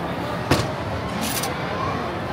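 A sharp metal clank about half a second in at a metal taiyaki (fish-shaped waffle) iron as it is worked open. A brief hiss follows about a second later, over steady food-court crowd noise.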